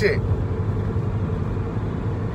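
Steady low rumble of a running car heard from inside its cabin, with a faint even hum above it.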